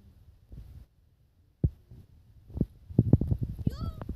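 Close, bumpy handling noise as a small dog plays right against the phone: a single sharp knock about one and a half seconds in, then a quick run of knocks and fur rubbing. Near the end the dog gives a short, high, rising whine.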